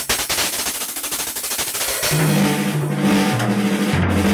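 Acoustic drum kit played fast in a solo: a rapid roll of strokes, then from about two seconds in a fast run around the toms, stepping down in pitch.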